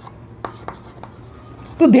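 Chalk writing on a chalkboard: a few short, sharp strokes and taps of the chalk as a word is written by hand.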